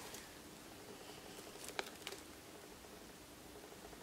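Faint handling of a metal-chain crossbody bag held up close: quiet rustling with two light clicks a little under two seconds in.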